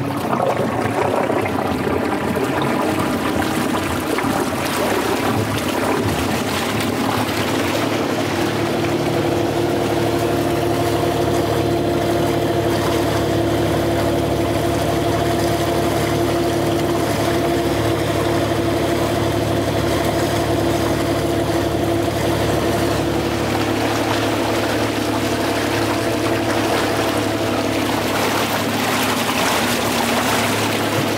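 Electric boat propulsion motor running flat out in a steady hum that firms up a few seconds in, with water rushing past the hull and churning in the wake.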